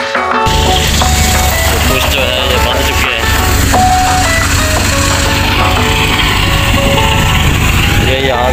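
Background music over the steady running of a tractor-driven wheat thresher, which cuts in about half a second in as a loud low drone with dense machine noise.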